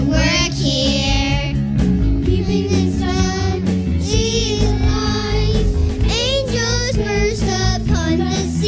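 A group of young children singing a song together over instrumental accompaniment.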